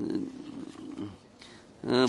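A man's low, rasping hesitation sound, a drawn-out creaky 'uhh' into the microphone, lasting about a second. Speech resumes near the end.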